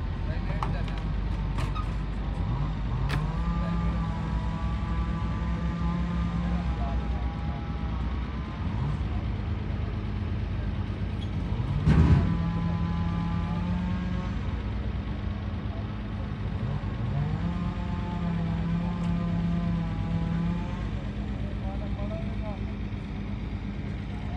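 Truck's diesel engine running, revved up and held three times, its pitch rising and then staying steady for a few seconds each time. A short loud burst sounds about halfway through.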